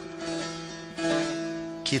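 Instrumental music from a plucked string instrument holding notes in a pause between sung lines of a Turkish-language song. A new note is struck about a second in, and the singing comes back at the very end.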